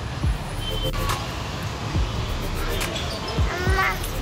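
Steady street traffic rumble with a few low thumps, and a toddler's short high voice near the end.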